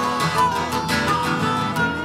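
Gibson J-50 acoustic guitar strumming a country-folk accompaniment, with held melody notes above it, in a short gap between sung lines.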